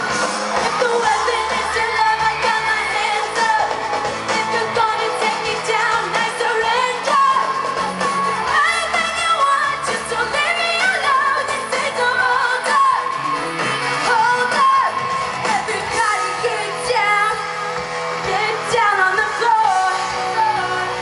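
Live pop-rock band performance: a female lead singer sings over drums, electric guitar and keyboards, heard from within the audience.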